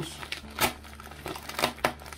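Plastic parcel wrapping crinkling and tearing as hands pull it open, with a few sharp crackles, the loudest in the second half.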